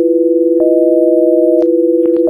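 Electronically generated sine tones: two low pure tones held together, joined by a third, higher tone for about a second starting about half a second in. Each tone change is marked by a sharp click, and a faint very high-pitched whine runs underneath.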